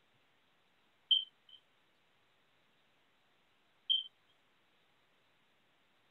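Two short, high-pitched electronic beeps about three seconds apart, each followed by a fainter echo blip, over near silence.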